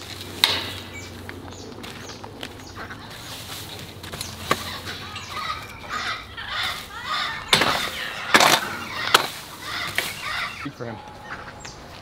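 A long-handled rake scraping and dragging pulled weeds over dirt, with irregular scrapes and several sharp knocks that are loudest in the second half.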